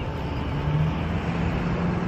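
Steady outdoor rumble of motor traffic, with a faint low hum running under it.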